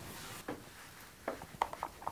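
Faint handling of a small fabric pocket as it is turned right side out and its corners pushed out with a pointed tool, with a few light taps and clicks.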